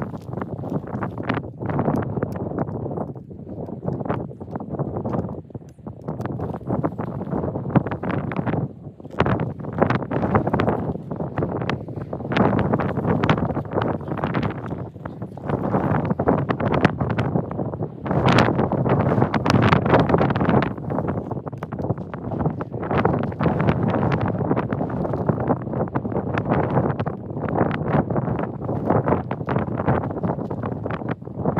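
Wind buffeting the microphone: a rough, uneven rumble that swells and drops in gusts, with scattered thumps.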